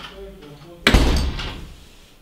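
A black metal front door swinging shut and slamming about a second in, the bang ringing on for about half a second.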